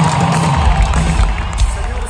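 Live rock band in an arena playing under a cheering crowd: low held notes, then a heavy deep bass rumble that comes in about half a second in.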